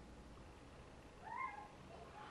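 A short high-pitched call that rises and falls, about a second and a half in, over faint room tone.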